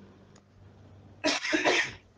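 A person coughs, two quick coughs a little past a second in.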